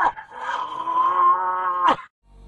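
One long drawn-out vocal call held at a steady pitch after a laugh, ending in a short sharp swoosh near the end.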